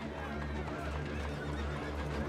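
Busy old-time street ambience: a horse whinnying and hooves clip-clopping amid indistinct crowd voices, over a low steady rumble.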